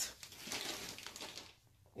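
Packaging rustling and crinkling as shapewear shorts are pulled out of it, dying away about a second and a half in.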